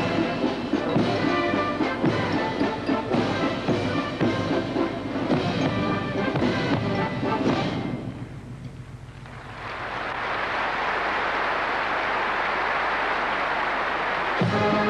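Military brass band with drums playing a march, the music ending about halfway through, followed by steady applause from the audience.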